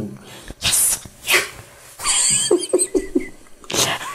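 Men laughing in several short, breathy bursts.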